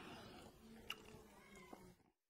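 Near silence: faint room tone with two small clicks, about a second in and near the end, as the plastic power-cable clip on the base of a Google Nest Wifi point is handled.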